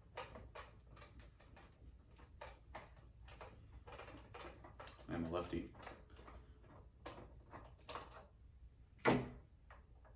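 Light plastic clicks, taps and rattles of hands working at a toy Stormtrooper helmet's battery compartment while it is opened to take AA-size batteries. There are brief low voice sounds about halfway through and a louder one near the end.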